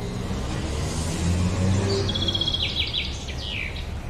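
A bird chirping in a quick run of short notes and falling sweeps about halfway through, over a steady low rumble.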